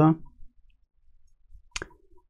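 A sharp click near the end from a computer mouse button, with a couple of faint ticks just before it.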